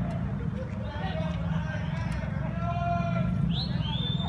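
Street noise over a steady low rumble, with distant voices and a long drawn-out call in the middle, and a short high rising whistle near the end.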